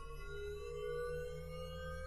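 Background music: soft ambient tones held long and sliding slowly in pitch, over a low pulsing bass.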